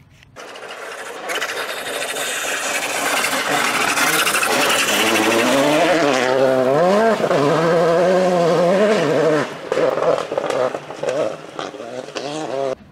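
Rally car engine on a gravel stage, starting suddenly about half a second in. A rising rush as the car comes closer, then revs that climb and fall several times with throttle and gear changes, turning choppy and on-off near the end.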